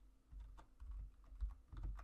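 Computer keyboard keys being typed: an irregular run of quick keystrokes.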